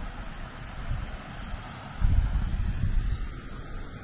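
Wind buffeting the microphone, a low rumble that grows louder about halfway through.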